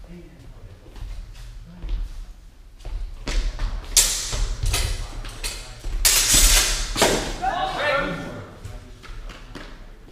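Sword-fencing exchange: swords striking together and feet thumping on the sports-hall floor in a quick flurry a few seconds in, loudest around six to seven seconds, echoing in the hall. A shout follows at the end of the exchange.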